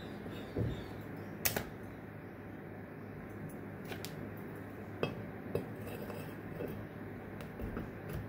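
The metal halves of a sand-casting flask being handled and fitted together, the female half going on top: a sharp metallic clink about a second and a half in, another at about four seconds, and a few softer knocks of metal against metal and the baking tray.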